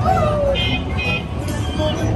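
Amusement-ride music playing over a low steady rumble from the moving ride cars, with riders' voices mixed in.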